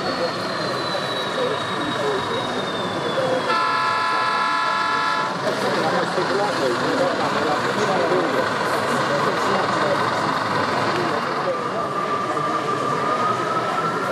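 Exhibition-hall crowd chatter. A model locomotive's sound-decoder horn sounds once for just under two seconds, about three and a half seconds in.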